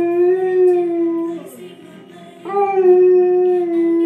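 A dog howling with its muzzle raised: one long, steady howl that slides down and stops about a second and a half in, then a second long howl that begins just past halfway and holds to the end.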